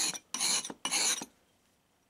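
A steel stone-carving chisel rubbed back and forth on a sharpening stone: three rasping strokes, stopping a little over a second in. This is a quick edge being put on the chisel by hand.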